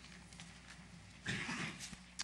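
Steady low electrical hum of a hearing-room sound system, with one short rough vocal sound from a person, about half a second long, a little over a second in.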